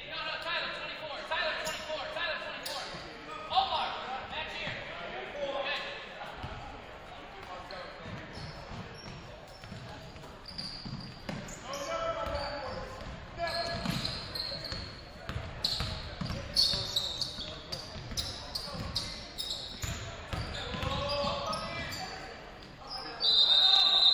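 Live basketball play in a gym: a ball dribbled on the hardwood floor, short sneaker squeaks, and players' and spectators' voices echoing in the hall. A loud, high, steady squeal sounds briefly just before the end.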